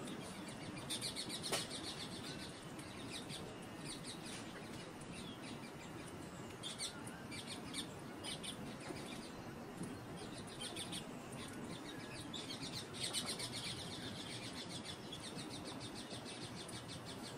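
Bird chirping in short, fast trilled bursts that come every few seconds.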